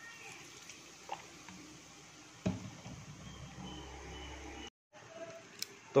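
Liquid trickling and splashing faintly into a pot of beef tripe. About halfway there is a single knock, followed by a low rumble, and the sound drops out briefly near the end.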